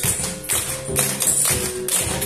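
Live capoeira music: pandeiro tambourine jingles striking in a steady rhythm, over a berimbau's pitched tones and an atabaque drum.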